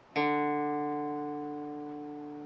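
Open D string of an electric guitar plucked once and left ringing, slowly dying away, about a second after a short silence. The tuner reads this note a little sharp.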